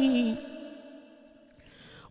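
Unaccompanied male voice singing an Islamic devotional chant (inshad) ends a phrase on a note that slides down and fades out within half a second. A quiet pause follows, and near the end comes an audible breath in before the next phrase.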